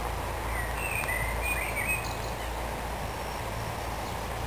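Outdoor ambience with a few short bird chirps in the first half, over a steady low rumble.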